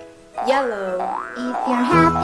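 A springy cartoon sound effect that swoops up and down in pitch about half a second in. Just before the end, a bouncy children's tune with a bass line begins.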